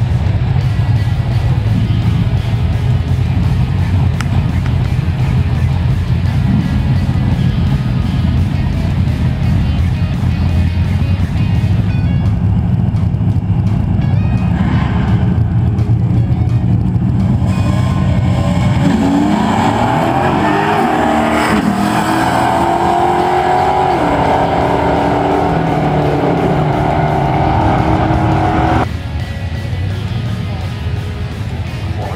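Drag-race cars, among them a 3.7-litre V6 Ford Mustang, running at the start line with a steady low rumble, then launching about two-thirds of the way in: the engines rev hard and climb in pitch through several gear changes until the sound cuts off suddenly near the end.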